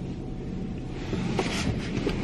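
Car engine idling, heard inside the cabin as a steady low hum, with a few soft clicks and rustles about a second and a half in as someone shifts in the seat.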